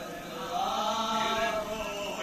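A group of men chanting a marsiya, an Urdu elegy, without instruments: a lead voice with others joining, in long held lines that slowly rise and fall in pitch.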